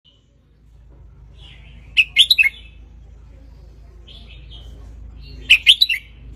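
Red-whiskered bulbul singing: two short phrases of quick, loud notes about three and a half seconds apart, each led in by softer notes.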